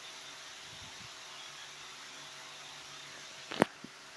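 Steady room noise with a faint hum, broken by a single sharp tap near the end.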